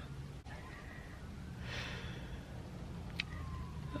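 A woman sighs once, about halfway through, over a steady low hum inside a car's cabin. Near the end there is a faint click and a thin, slowly falling tone.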